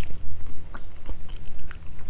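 Close-miked chewing and biting of food, with scattered short clicks and crackles.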